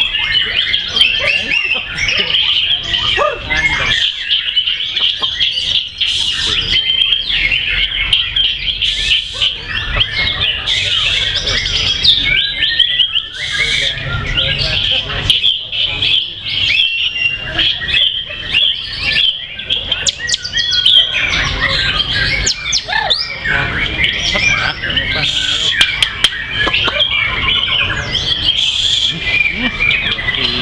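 White-rumped shamas (murai batu) singing without a break: a dense stream of rapid whistles and chirps from caged contest birds, several voices overlapping.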